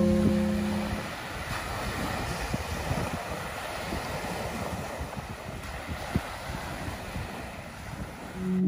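Small waves breaking and washing up on a sandy beach, with wind rumbling on the microphone. Organ music fades out in the first second.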